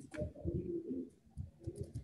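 A bird calling in a few low pitched notes through about the first second, with faint clicks later on.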